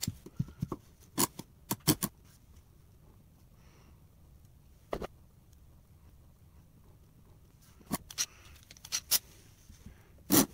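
Small hand clamps being handled and fitted onto a plywood box: scattered sharp clicks and clacks of clamp parts against each other and the wood, in short clusters with pauses between.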